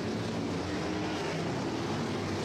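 Sprint car engines running at racing speed around the dirt oval, a steady drone.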